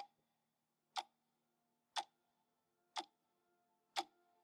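Clock ticking, one sharp tick each second, each tick followed by faint ringing tones that linger until the next.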